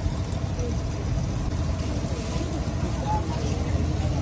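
Busy street-market background: a steady low rumble with faint voices of people nearby.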